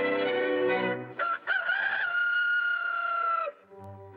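Orchestral cartoon score, then a rooster crowing: one long call that rises and is held for about two seconds before it stops.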